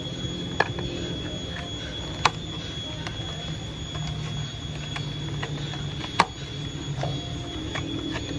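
Plastic fan blades of a small hanging Profan propeller fan being pushed into the motor hub, giving a few sharp clicks, the loudest about six seconds in, over a faint steady high tone.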